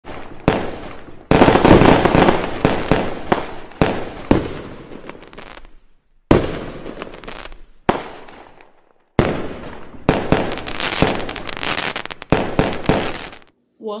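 Fireworks going off: a string of sudden bangs a second or so apart, each trailing into crackling that fades away. The sound stops suddenly near the end.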